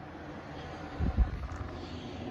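Toshiba 6000 BTU portable air conditioner running with a steady fan hum. About a second in there are a few low bumps of handling noise on the microphone.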